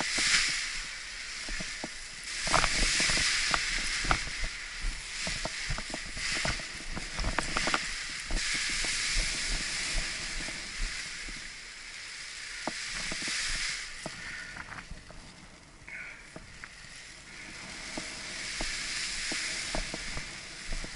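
Wind hissing on an action camera's microphone, with many short knocks and rustles from the nylon wing and lines of a paraglider being ground-handled. The knocks are busiest in the first half, and everything drops quieter for a couple of seconds about fifteen seconds in.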